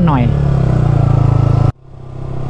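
Sport motorcycle engine running steadily, heard from the rider's seat. The sound cuts out abruptly near the end and then fades back in.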